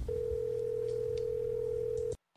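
A steady electronic tone held at one mid pitch, with a faint low hum beneath it.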